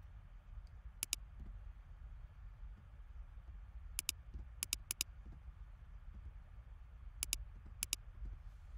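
Computer mouse clicks in quick pairs, six pairs in all: one about a second in, three close together around the fourth and fifth seconds, and two near the end, over a low hum.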